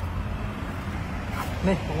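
Steady low rumble of motor traffic, with a short spoken word near the end.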